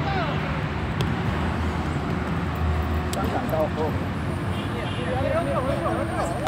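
Outdoor background at a small-sided football game: a steady low rumble with distant shouts and calls from the players, clearest from about three seconds in and again near the end.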